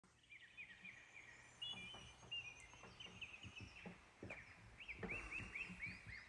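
Faint birdsong: small birds repeating short chirps and whistles, with a few faint knocks among them.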